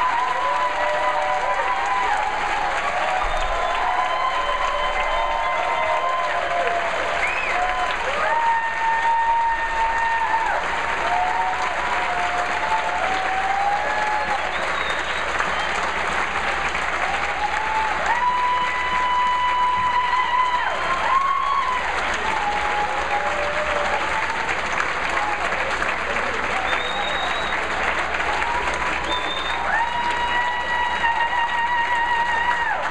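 Sustained applause from a large audience, with a melody of held pitched notes running over it.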